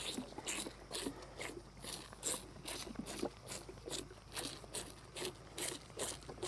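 A cow chewing feed out of a rubber feed pan: faint, steady, rhythmic crunching, about three crunches a second.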